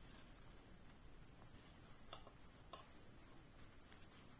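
Near silence with a few faint ticks as a steel crochet hook and thread are worked through crochet fabric, the clearest two a little past halfway.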